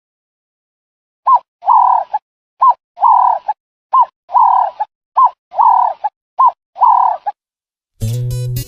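A dove cooing: a two-note phrase of a short note followed by a longer one, repeated five times at an even pace of about one phrase every 1.3 seconds, starting a little over a second in.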